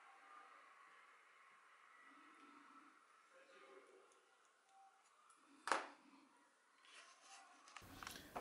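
Near silence with faint handling of small plastic parts and tools; about two-thirds of the way in, one sharp click.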